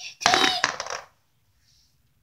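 A child's short, high vocal squawk with a few light clicks mixed in, ending about a second in.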